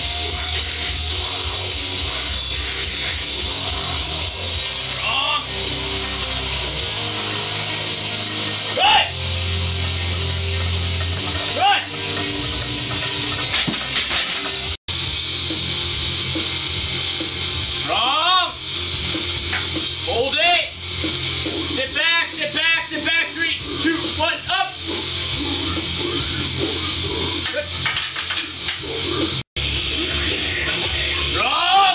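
Loud rock music plays throughout, with voices (shouting or vocals) over it in the second half. It cuts out for an instant twice.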